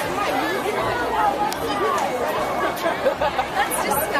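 Chatter of several young voices talking over one another, with two short hissing bursts, one about halfway through and one near the end.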